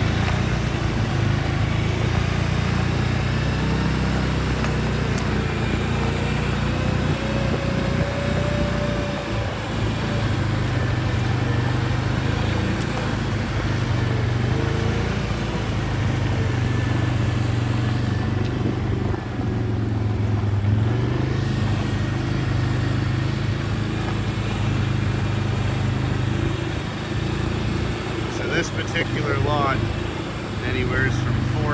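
Vehicle engine running steadily as it drives slowly along a gravel track, a continuous low drone with road noise over it.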